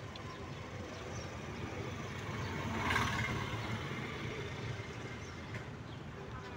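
Car engine and road noise heard from inside the cabin while driving, steady, with a brief louder swell about halfway through.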